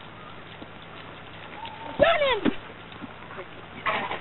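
A single short, loud shout from the playing field about halfway through, high-pitched and bending up then down, over faint open-air background with a low steady hum.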